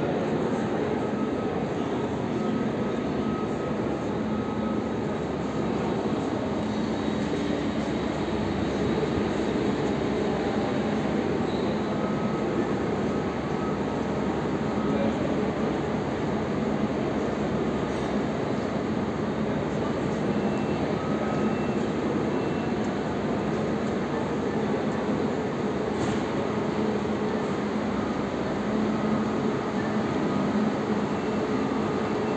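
Steady ambient noise of a busy railway station: a continuous low hum and rumble under a faint murmur of people's voices, with no sudden events.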